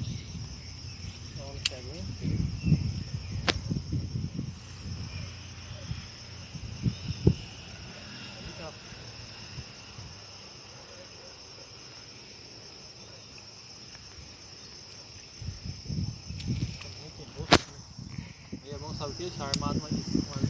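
Outdoor insect chorus: a steady, high-pitched pulsing trill from insects. Low rumbling on the microphone comes and goes in the first few seconds and again near the end, with a few sharp clicks, the loudest about three seconds before the end.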